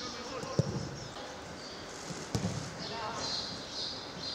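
A football being kicked on a grass pitch: two dull thuds about a second and three quarters apart.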